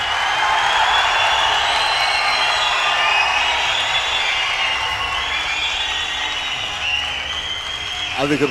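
A large audience applauding, a dense, steady clapping that eases a little toward the end.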